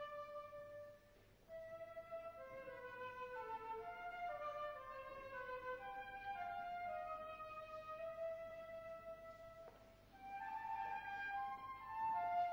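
Slow classical melody on a flute with faint strings, played in phrases of held notes, with short breaks about a second in and near the ten-second mark.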